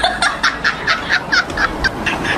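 A rapid run of about eight short, high-pitched calls, about four or five a second, each bending in pitch.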